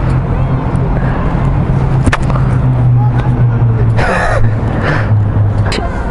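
Honda CBR125R's single-cylinder four-stroke engine idling steadily, then cutting out a little before the end. A brief rustle sounds about four seconds in.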